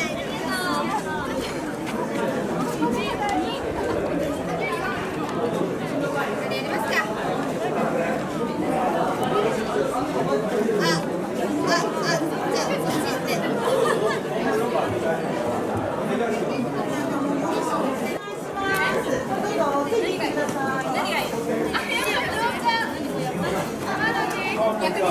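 Overlapping chatter of a group of teenage girls talking at once, with a few short clicks about halfway through.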